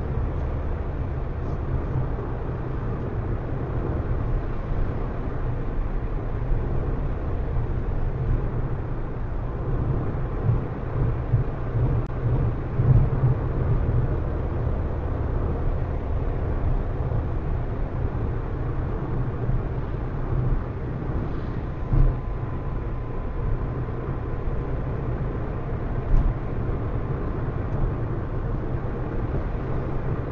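Steady low road and engine rumble of a car cruising on a highway, as picked up inside the cabin by a windscreen-mounted dashcam, with a few brief knocks.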